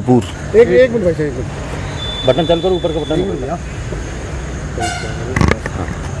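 A vehicle horn gives a short toot near the end, followed at once by a sharp knock, amid voices and street noise.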